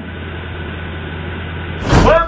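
A car idling, heard as a steady low hum and hiss. A sudden loud burst of noise comes near the end.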